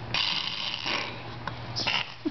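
A baby making a rasping, hissing noise with his mouth and throat, a long burst of about a second followed by a shorter one near the end.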